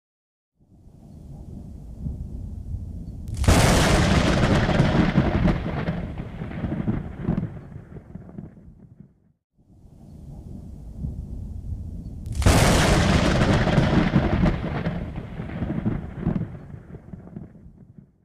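Thunder sound effect played twice. Each time a low rumble swells for a few seconds, then breaks into a sudden loud clap that rolls away over about five seconds.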